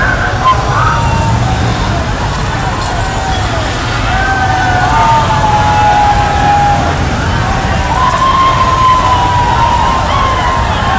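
Police sirens wailing in slow rising and falling tones over a steady rumble of crowd and traffic noise.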